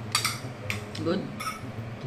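A metal spoon clinking against a plate a few times, sharp short ringing clinks, as rice is scooped up.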